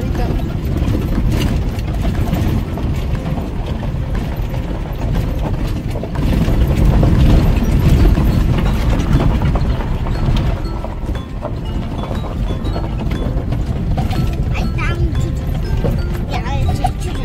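Vehicle driving on a rough dirt road, heard from inside the cab: a continuous low rumble with a steady clatter of rattles and knocks, loudest about six to nine seconds in.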